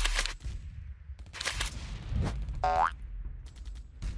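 Cartoon battle sound effects: a few sharp bangs like gunfire or explosions over a low rumble, with a short rising boing-like tone near the three-second mark.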